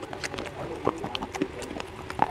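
Slate pencil being chewed close to the microphone: a string of sharp, irregular dry crunches.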